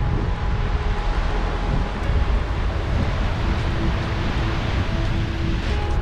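Wind rushing and buffeting over the microphone of a camera carried on a moving bicycle, a steady rumbling noise with no break.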